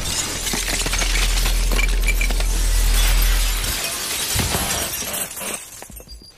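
Film sound effects of a glass window shattering, with shards and debris clinking and crashing down over a deep rumble. The rumble cuts off a little under four seconds in, and the crashing thins out and fades near the end.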